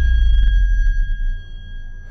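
Edited-in sound effect: a deep low rumble fading out over about a second and a half, under a steady high-pitched tone.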